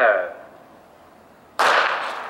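A starter's short spoken command, then about a second and a half later a single sharp crack from a starting pistol that sends the sprinters out of their blocks.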